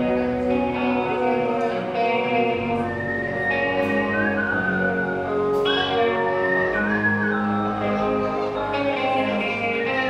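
Live rock band playing a slow passage: sustained chords under a high lead melody that slides between long held notes.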